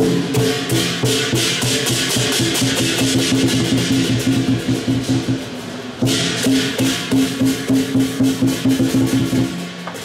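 Lion dance percussion: a large lion-dance drum beaten in rapid strokes with clashing cymbals and a ringing gong. The playing eases off about five seconds in, then comes back loud a second later.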